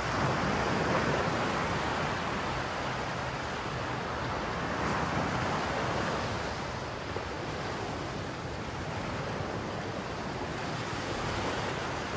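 Steady rushing outdoor noise with no distinct events, swelling slightly near the start and again about halfway through.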